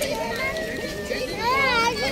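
Voices of children at play and people chattering, with a child's high-pitched call about one and a half seconds in.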